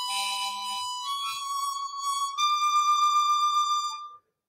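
Harmonica playing: a short chord, then a long held note that rises in two small steps.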